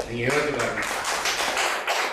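Audience clapping: a short burst of many quick hand claps lasting about two and a half seconds.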